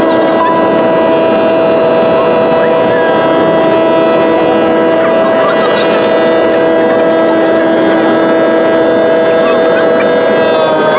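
Jet airliner engines heard from inside the cabin during the climb after takeoff: a loud, steady rush with several droning tones held at an even pitch.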